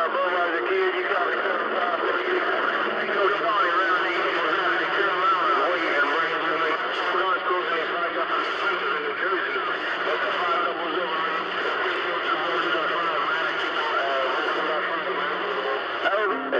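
CB radio receiving long-distance skip: several distant stations talking over one another, a garbled jumble of voices through the receiver, with low steady tones coming and going beneath.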